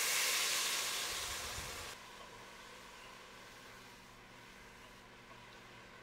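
Water poured into a hot, just-seared enameled cast-iron Dutch oven pot, hissing and sizzling into steam as it deglazes the browned bits on the bottom. The hiss is strongest at first and fades a little, then cuts off abruptly about two seconds in, leaving only a faint steady hum.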